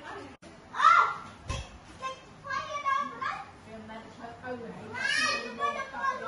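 Children's voices calling and chattering in play, with a loud high-pitched cry about a second in and another burst of loud voices near the end.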